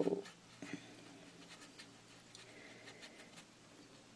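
Faint, scattered light taps and scrapes of a water brush picking up watercolour from a paint pan and touching paper.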